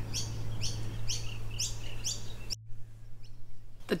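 A bird calling outdoors: a run of about five short, high chirps, evenly spaced about half a second apart, that stops abruptly about two and a half seconds in, over a steady low hum.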